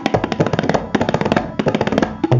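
Tabla played in a fast, dense run of strokes across the dayan and the bayan, with the bass drum's low resonance underneath.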